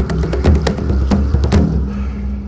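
Background music: a steady low bass and held notes under sharp percussive clicks, several a second, with the percussion dropping out near the end.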